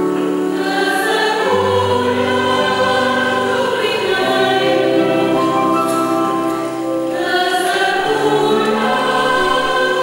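Mixed choir of men and women singing a hymn in harmony, moving through long held chords.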